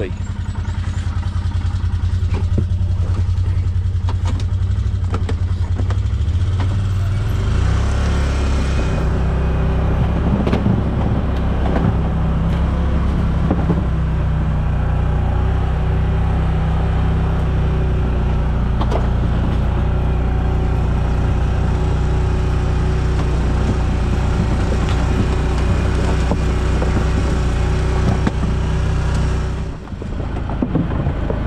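Side-by-side utility vehicle's engine running, then picking up speed about seven seconds in and driving on at a steady pace over rough ground, with a few knocks from the vehicle.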